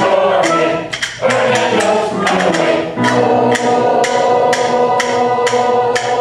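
Choir singing held chords with trumpet accompaniment, a tambourine marking the beat about twice a second.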